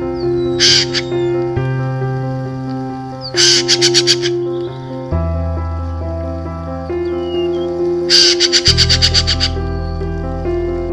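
Red-billed blue magpie giving three rattling calls, a short one about half a second in and two longer ones of rapid repeated notes near the middle and near the end. Under them, background music of soft sustained keyboard chords.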